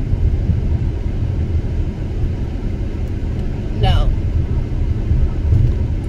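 Steady low road and engine rumble heard from inside the cabin of a car driving along a highway.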